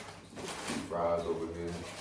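A man speaking, with paper rustling and tearing as a takeaway paper bag is ripped open and handled, mostly in the first half-second.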